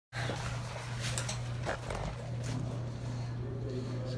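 Steady low hum with a handful of short clicks and rustles: handling noise from a phone being moved into position to record.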